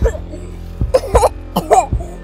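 Two short, throaty vocal bursts from a person, like coughs, over a low, steady background music bed.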